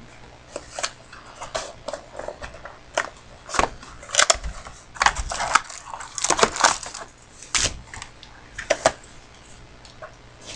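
Trading-card box and packs being handled and opened by hand: an irregular run of sharp crackles, scrapes and taps of cardboard and wrapper, busiest in the middle stretch.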